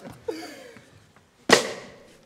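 A single sharp, slap-like percussive hit about one and a half seconds in, the loudest sound, with a short fading ring. A brief voice sound comes just before it, near the start.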